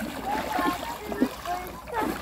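Feet splashing as children wade through shallow river water, with faint voices.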